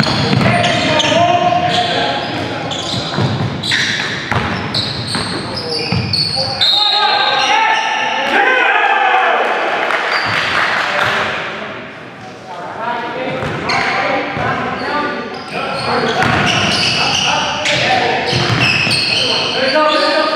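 Basketball game on a gym court: the ball bouncing and players' voices echoing in the hall, with a lull about twelve seconds in.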